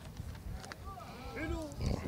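Faint voices of men in a small crowd, with a few quiet bending vocal sounds between about one and two seconds in.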